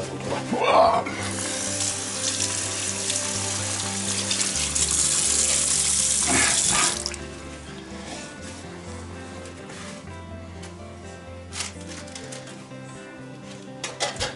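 Kitchen tap running into the sink for about six seconds to soak a tea towel, then turned off about seven seconds in.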